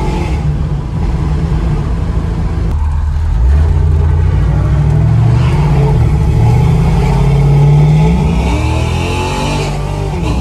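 Cammed 4.8-litre LS V8 in a 1979 Oldsmobile Cutlass, heard from inside the cabin, pulling hard from about three and a half seconds in: its pitch climbs, dips briefly around six seconds and climbs again, then the engine eases off near the end.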